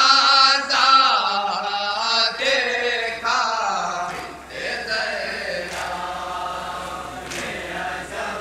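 Men chanting a noha, a Shia mourning lament, with voice alone: a lead voice is loud and high over the group for the first three seconds, then the chant goes on more softly.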